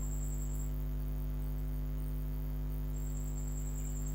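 Steady electrical hum, one low tone with a ladder of higher overtones, holding unchanged throughout, with no other event.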